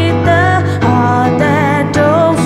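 A woman singing live, her held notes wavering with vibrato, over sustained chords played on a Roland keyboard.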